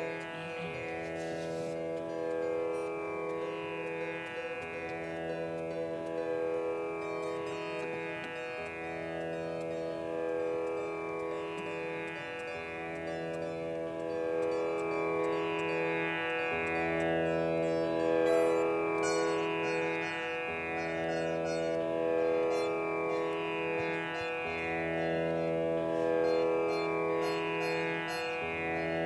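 Sitar playing a slow melody over a steady drone, with a new phrase of plucked notes about every two seconds.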